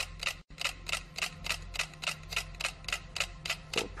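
About ten wind-up pendulum metronomes ticking on a shared swinging platform, a fast, even train of sharp clicks about five a second. The metronomes are mostly in step, pulling each other into sync, close to resonance.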